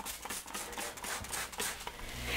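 Cloth rag rubbing over the plastic front and vent grille of an over-the-range microwave, a quick run of soft scratchy strokes.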